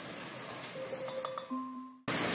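Steady, quiet sizzle of chopped onion, bell pepper and celery sautéing in a cast iron Dutch oven. In the second half there are a few faint clinks and short ringing tones from a measuring spoon against a glass seasoning jar, and the sound cuts off just before the end.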